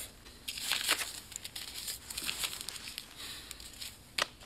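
Quiet, irregular rustling and crinkling with small clicks, as of something being handled.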